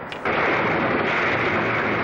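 A loud splash of a person falling backwards into water, a steady rush of noise that holds for about two seconds and then fades.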